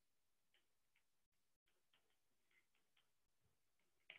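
Near silence, with a few very faint, scattered ticks of a stylus writing on a tablet screen.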